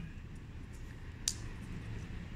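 Faint room hum with one brief, sharp rustle about a second and a half in, from fabric being handled and sewn by hand.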